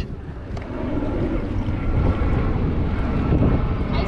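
Low engine rumble from a passing motor, building over the first second and then holding steady, with faint thin whining tones above it.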